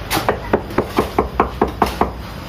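A small hammer tapping rapidly on the wooden formwork board of a freshly poured concrete slab, about five sharp knocks a second. Tapping the form like this settles the wet concrete against the board.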